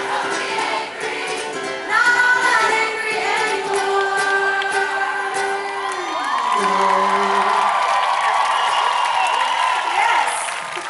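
Live rock band playing a fast song with a woman singing. About six seconds in the music slides down into a held final chord, and the crowd cheers and screams over it as it ends.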